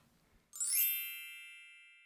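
A single bright, bell-like chime struck once about half a second in, its high ringing tones slowly fading away.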